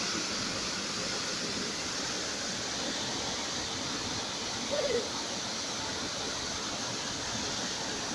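Steady rush of the Urlătoarea waterfall, water falling in cascades onto rock, with a short voice sound about five seconds in.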